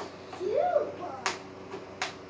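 A single sharp plastic click about a second in, as two 3D-printed blaster parts are twisted together into a tight fit, after a short spoken word.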